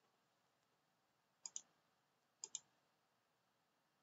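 Near silence broken by two pairs of faint computer-mouse clicks, about a second apart, each pair a quick double click.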